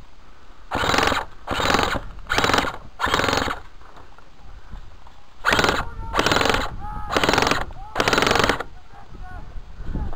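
Airsoft guns firing short full-auto bursts, each about half a second long: four bursts in quick succession, a pause of about two seconds, then four more.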